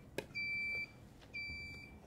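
Electronic beeping: two beeps of a steady high tone, each about half a second long, repeating about once a second, with a short click just before the first.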